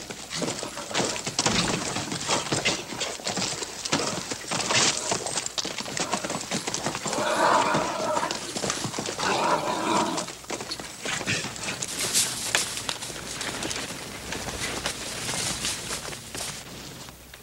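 A horse's hooves pounding and scuffing the dirt of a corral as a rider works a lively, bucking horse. There are two louder whinnies near the middle.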